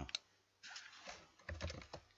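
Typing on a computer keyboard: a short run of keystrokes that comes thickest in the last half-second as a word is typed in.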